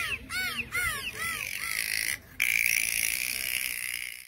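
Bottlenose dolphins calling at the surface: a quick run of short squeaks that rise and fall in pitch, about four a second, for the first second or so. After a brief dip, a steady hiss follows.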